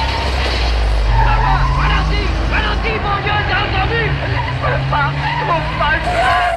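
Film soundtrack of an airfield chase: a light aircraft and car engines drone steadily, the pitch rising and falling a little, while a high voice cries out over them from about a second in.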